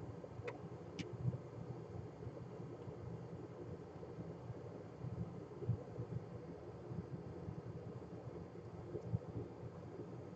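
Low, steady room and bench noise with a faint hum, and two small clicks about half a second and a second in.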